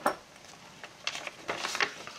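Pages of a thick handmade paper junk journal being turned by hand: a sharp tap right at the start, then paper rustling from about a second in.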